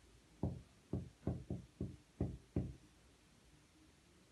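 Felt-tip marker knocking against a board as letters are written, about eight short, sharp knocks in quick succession over the first three seconds.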